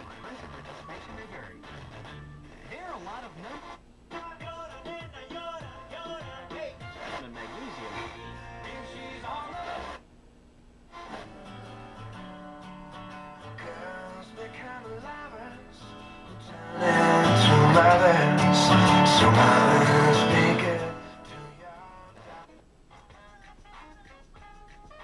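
Sharp GF-9494 boombox radio being tuned across stations: snatches of music and talk through its speaker, with brief dips between stations. About seventeen seconds in, a much louder stretch lasts about four seconds before it falls back to a quieter station.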